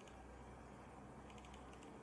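Faint computer keyboard typing: a quick run of key clicks about a second and a half in, over a low steady hum.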